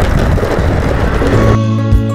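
Steady rumble of skateboard wheels rolling over brick pavers, with wind on the microphone, while the board is ridden. About one and a half seconds in it cuts off abruptly, and soft instrumental music takes over.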